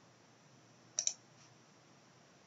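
A computer mouse button clicked once about a second in, heard as two quick clicks for press and release, over faint room hiss.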